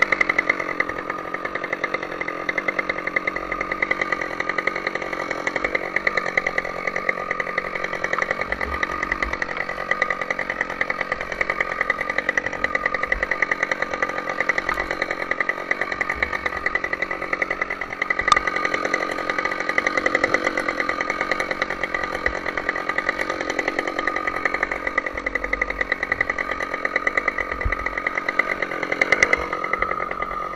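Husqvarna two-stroke chainsaw running steadily at high revs, cutting into the base of a tree trunk.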